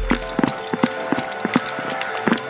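Running footsteps on pavement, about four sharp steps a second and uneven, picked up by a body-worn camera on the runner.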